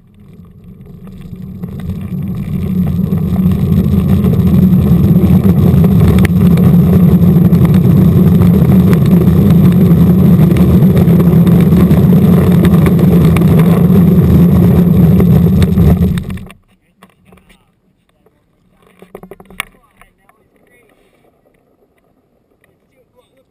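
Small wheels rolling over asphalt: a loud, steady rumble that builds over the first few seconds as the ride gathers speed, holds, then stops abruptly about sixteen seconds in.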